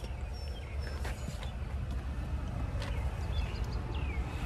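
Quiet outdoor background: a steady low rumble with a few faint, short bird chirps and some soft clicks.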